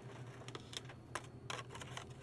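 Light plastic clicks and clacks of blister-packed cosmetics being handled on a pegboard display's metal hooks, about five scattered clicks, over a low steady hum.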